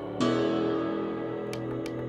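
Music played over Bluetooth through the Instabox D10 clock radio's built-in dual speakers: a chord struck about a quarter-second in that rings on and slowly fades, with a few short ticks near the end.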